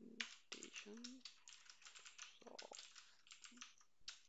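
Faint typing on a computer keyboard: quick, irregular runs of key clicks. A brief murmur of a voice comes about a second in.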